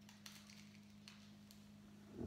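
Near silence: room tone with a faint steady low hum and two faint ticks.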